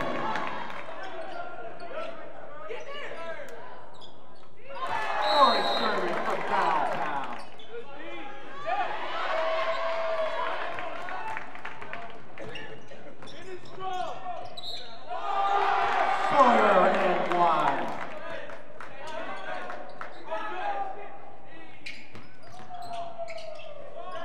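Game sound in a basketball gym: a basketball bouncing on the hardwood court against the hall's steady background. Voices shout and cheer in bursts several times.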